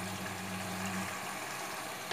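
Tomato-paste masala with chicken and potatoes sizzling steadily as it fries in oil in a pot, with a low hum underneath that fades out after about a second and a half.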